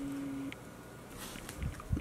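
A short held hum of admiration, a single steady note for about half a second, then faint crinkling of a plastic glitter pouch being handled, with a couple of small soft knocks near the end.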